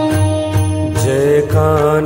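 Devotional aarti music: an instrumental melody over a steady bass line, with a solo voice starting to sing about a second in.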